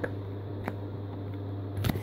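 Lenormand cards being picked up one by one off a cloth-covered table, giving a light click about two-thirds of a second in and a sharper one near the end, over a steady low hum.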